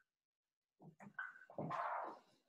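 Dry-erase marker writing on a whiteboard: a quick run of short scratching strokes with thin squeaks, starting nearly a second in.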